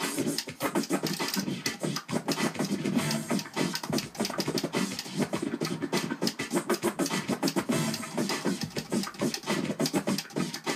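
Vinyl record scratching on a Technics turntable, the sound chopped in and out by the crossfader of a Pioneer DJM-400 mixer. The strokes come in a fast, unbroken run.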